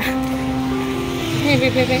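A motor vehicle's engine running at a steady hum, with a voice coming in near the end.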